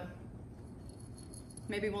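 Faint metallic jingling of a small dog's collar tags as the dog is held and shifts about, with thin high ringing notes.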